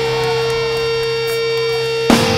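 Live metalcore band holding a sustained, droning amplified chord of steady ringing tones, with a higher line wavering up and down over it and no drums playing.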